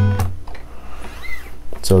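A man's speaking voice with a pause of about a second and a half, in which a steady faint tone hangs on, likely the acoustic guitar's strings still ringing; speech resumes near the end.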